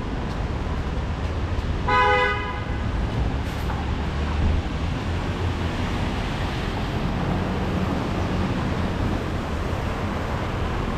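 A car horn toots once, briefly, about two seconds in, over the steady hiss and low rumble of traffic on a wet, rainy city street.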